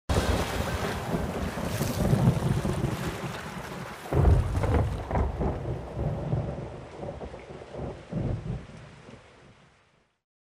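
Thunder rumbling over steady rain, with the loudest crash about four seconds in and smaller rolls after it. The whole storm fades away toward the end.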